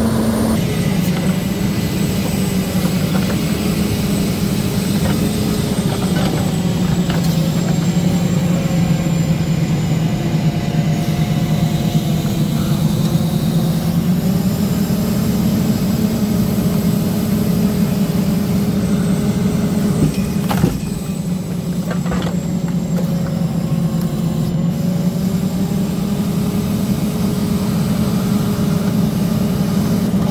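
Diesel engine of an International log truck running steadily while the truck-mounted knuckleboom loader lifts logs onto the bunks; its pitch rises and falls a little as the hydraulics work. One sharp knock comes about two-thirds of the way through.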